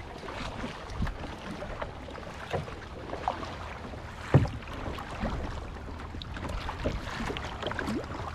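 A sit-on kayak being paddled: irregular splashes and drips from the paddle blades, with water lapping at the hull. One much louder thump comes about halfway through.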